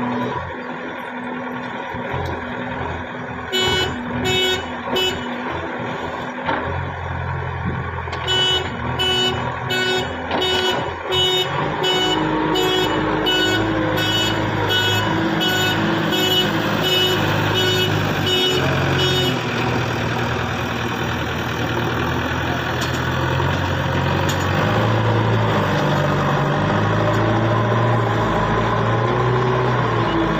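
JCB 3DX backhoe loader's diesel engine running and revving up and down under load as it works the earth. Its reversing alarm beeps in a steady rhythm, about one and a half beeps a second, from a few seconds in until about two-thirds of the way through.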